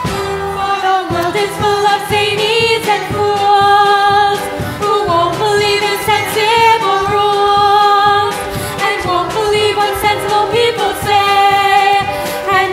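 A live pit orchestra playing a lively show tune, with voices singing over it.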